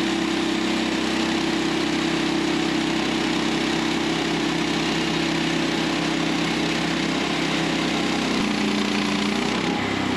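Gasoline engine of a Woodland Mills HM130MAX portable bandsaw mill running steadily under load as the band blade saws along a log. About eight and a half seconds in the engine note changes as the blade finishes the cut.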